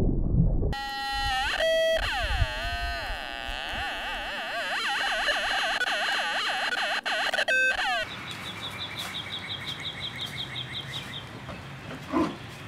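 Synthesized electronic sound effects. A few steady beeps give way to a long warbling tone that wavers up and down in pitch. A couple more beeps follow, then a run of quick high chirps at about five a second.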